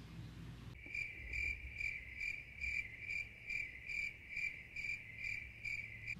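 A smartphone on speakerphone playing an outgoing call's ringing tone. It is a high, thin tone that pulses evenly about two to three times a second, starting about a second in.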